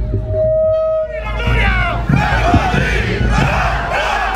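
A single long shout held on one pitch for about a second, then many voices shouting and cheering together, as the band's line-up and the crowd yell.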